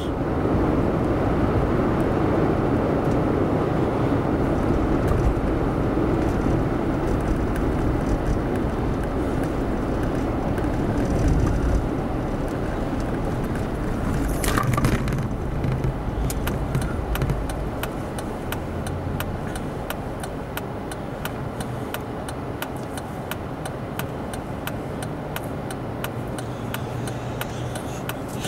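Road and engine noise inside a Jeep's cabin while driving, easing off as the vehicle slows to a stop at a traffic light. A short sharp sound about halfway through, then regular ticking runs to the end.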